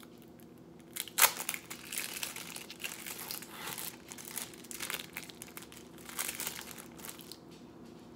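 Thin plastic wrapper of an individually wrapped cheese slice crinkling as it is unwrapped and peeled off. It starts about a second in with one sharp crackle, the loudest, and continues as a run of close crinkles that end just before the close.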